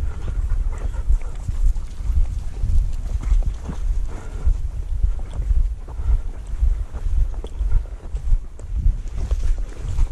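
Wind buffeting the microphone of a body-worn camera, an uneven low rumble, with the rustle of footsteps through dry grass as the wearer walks.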